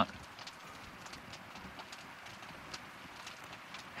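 Quiet background hiss with a scattering of faint, short clicks and ticks at irregular intervals.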